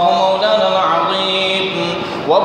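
A man's voice chanting Quranic recitation in Arabic in a melodic style, holding long notes, through a microphone.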